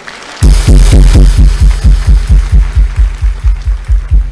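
Loud electronic music: rapid deep bass pulses, about five a second, each sliding down in pitch, under a bright hissing wash, starting suddenly about half a second in.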